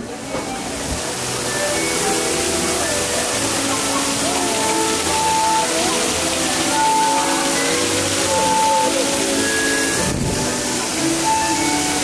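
Tiered stone fountain splashing steadily, a continuous rush of falling water, with music of long held notes playing over it.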